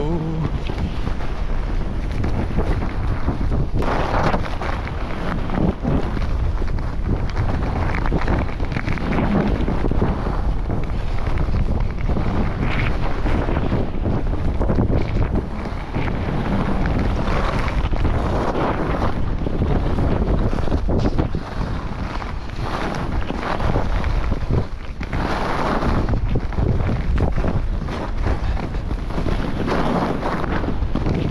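Wind rushing and buffeting the microphone of a camera carried by a downhill skier, with the skis hissing and scraping over snow and swelling louder at several points, as on the turns.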